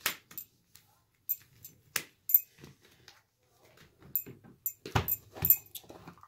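Irregular sharp clicks and taps of tarot cards and a cardboard deck box being handled on a table, busiest near the end.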